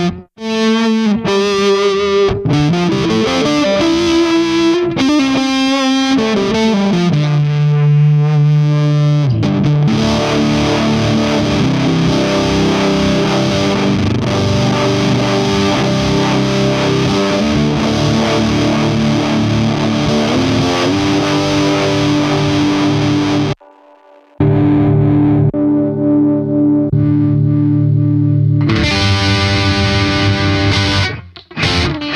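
Electric guitar played through a Hotone Ampero II amp modeler and multi-effects processor with distorted tones: single notes with slides and bends at first, then held, sustained chords. The playing stops for about a second near three-quarters of the way through, then carries on.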